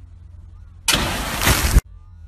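A sudden loud blast of pressurised water bursting out at a hose-reel irrigator, starting about a second in as a harsh rushing spray, then cutting off abruptly.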